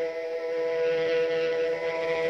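Intro of a 90s indie rock song: one sustained droning chord held steady, with no drums or beat yet.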